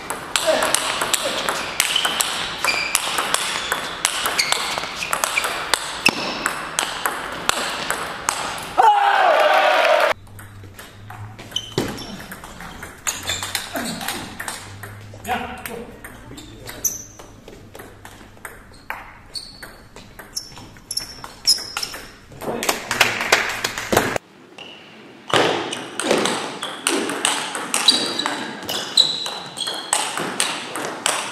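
Table tennis rallies: the ball clicking quickly back and forth off the paddles and the table across several exchanges, with sudden changes between rallies. Voices come in at times, the loudest a short cry about nine seconds in.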